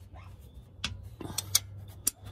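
A few sharp metallic clicks of a wrench on a bolt under a Jeep during a starter replacement, over a steady low hum.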